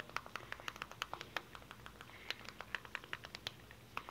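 Faint, irregular clicks and taps, several a second, over a quiet room.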